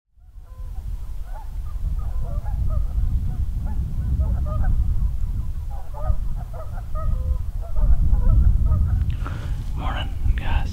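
A flock of geese honking, with many short calls overlapping, over a steady low rumble.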